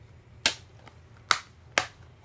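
Black plastic DVD keep case being closed and handled: three sharp plastic clicks, the last two close together near the end.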